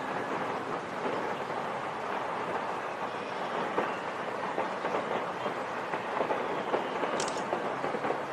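Steady rushing roar of a large fire burning after an explosion, with scattered small pops and crackles in the second half.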